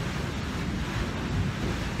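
Steady rush of wind buffeting a phone microphone, with the sea's noise beneath it, out on the open deck of a ship in icy water.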